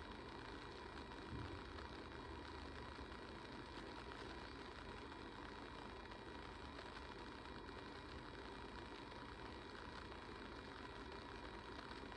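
Faint steady room tone: a low, even hiss with a thin constant hum.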